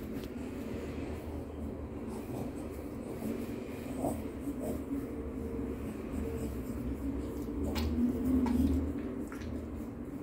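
A steady low hum in a small room, with a few faint rustles and soft clicks as a long-haired dog's fur is rubbed on a tiled floor.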